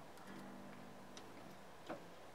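Faint handling of an unplugged Gretsch G6120DC hollow-body electric guitar: its strings ring softly at a few low pitches, then fade. Two small clicks follow, the second near the end.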